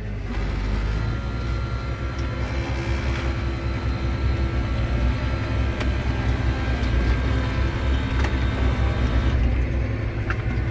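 John Deere 8330 tractor's six-cylinder diesel engine running steadily as the tractor drives in gear, heard from inside the cab. It is being test-driven after a transmission calibration.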